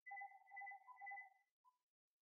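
Faint electronic tone of two steady pitches sounding together, swelling about three times over a second and a half.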